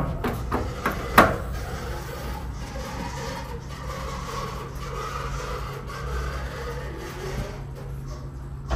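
An elevator car's floor button is pressed with a sharp click about a second in, followed by the steady low hum of the Otis hydraulic elevator's cab with faint rubbing noise.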